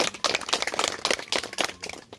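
A group of people clapping: a dense, irregular patter of sharp claps that thins out at the end.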